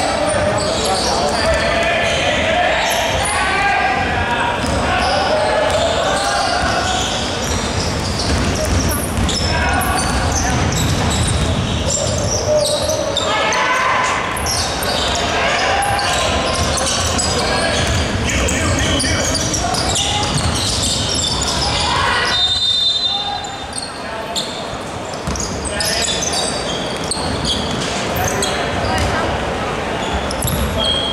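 A basketball being dribbled and bounced on a wooden gym floor during play, with players' shouts and chatter echoing around a large sports hall.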